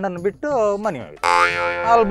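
A man talking in a lively way in Kundapura Kannada. About halfway through, a brief held buzzy tone with hiss lasts under a second.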